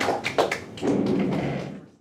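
A few light taps and thumps in the first half second, then a duller muffled sound that fades and cuts off near the end.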